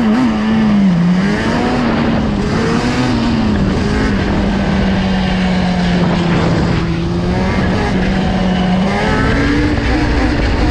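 Yamaha Banshee's twin-cylinder two-stroke engine running as the quad rides along a paved road. The engine note dips about a second in, holds at a steady pitch through the middle and rises a little near the end.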